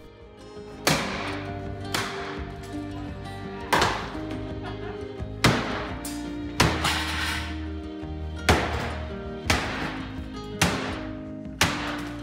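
Sledgehammer blows smashing a wooden-framed cabinet island apart, about nine heavy strikes at uneven gaps of one to two seconds, each with a short ring, over background music.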